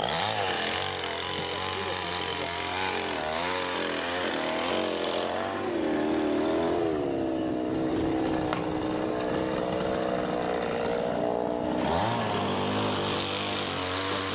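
Chainsaw running, its pitch rising and falling with the throttle for the first few seconds, then holding steady for several seconds before changing again near the end.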